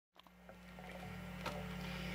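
Steady low electrical hum from an electric guitar amplifier, fading in, with a few faint clicks.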